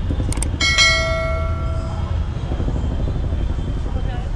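Subscribe-button sound effect: a quick double mouse click followed by a bright notification-bell ding that rings out and fades over about a second, over steady street and traffic noise.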